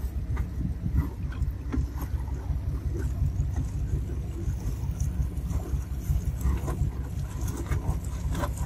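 Low, unsteady rumble aboard a boat on open water, with wind on the microphone and a few faint knocks.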